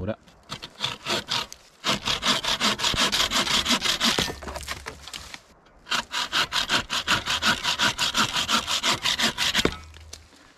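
A wooden-framed bucksaw with a Bahco 21-inch dry-wood blade cutting through a small branch of a fallen tree in quick, rhythmic back-and-forth strokes. It starts with a few light strokes, then saws steadily in two runs with a short pause around the middle.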